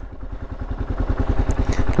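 A 2003 Kawasaki KLR650's single-cylinder four-stroke engine ticking over at idle, with a rapid, even beat of firing pulses. It grows a little louder near the end.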